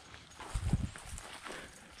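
Footsteps on a dry forest floor of leaves and twigs: a few soft thuds clustered about half a second in, then faint rustling.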